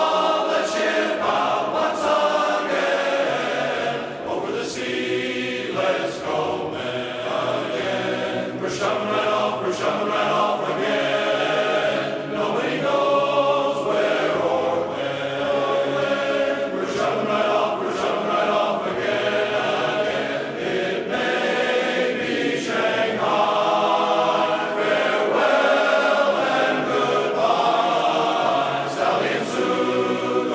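A choir singing, with many voices holding and moving between sustained chords.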